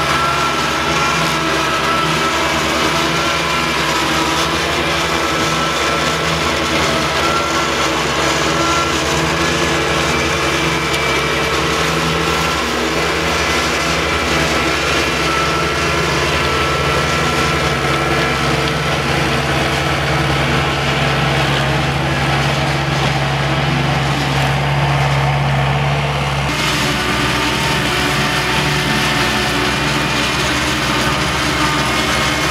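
Bobcat skid steer's diesel engine running steadily under load while its hydraulic motor turns a finish mower through a PTO shaft, cutting grass. The sound shifts abruptly near the end.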